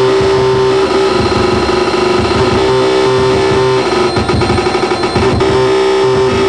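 Live electronic noise music: a loud, dense wash with a held mid-pitched drone that stutters, drops out and comes back several times.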